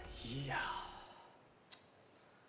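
A man's short, weary sigh about half a second in, as a sound meaning "oh, dear". One faint click comes near the end.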